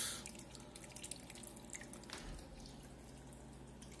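Aquarium water faintly trickling and dripping, with a low steady hum underneath.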